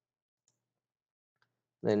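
Near silence broken by two faint computer-mouse clicks, about half a second and a second and a half in, as a menu item is picked; a man's voice starts just at the end.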